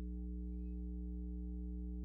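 A steady low drone of several held tones, with no change in level; a faint short rising chirp sounds about half a second in.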